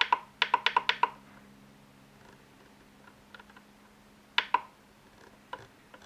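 Key-press clicks from the touchscreen keyboard of a Flysky FS-ST16 radio transmitter as text is deleted and retyped. A quick run of about eight clicks in the first second, then two clicks a little after four seconds and one more near the end.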